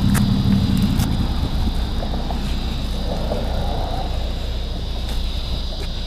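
Steady low rumble with rustling and a few small clicks, picked up by a police body camera pressed against a man's clothing while he is held and searched.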